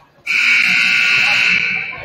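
Gymnasium scoreboard buzzer sounding during a stoppage in a basketball game: one loud, steady buzz of a little over a second that starts abruptly and fades out.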